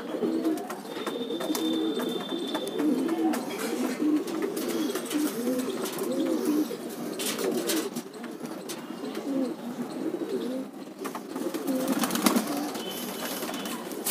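A flock of domestic pigeons cooing, many low, rolling calls overlapping without a break.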